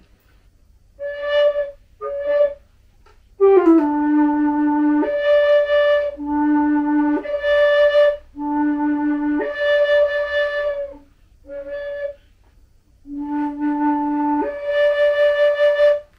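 RKF Philharmonic hybrid flute, a Native American-style flute mouthpiece on a Guo New Voice composite concert flute body, playing separate notes that jump back and forth an octave between low D and the second-octave D. Two short high notes come first. About three seconds in, a low note slides down into pitch, then several low–high pairs follow, and it ends on a held high D.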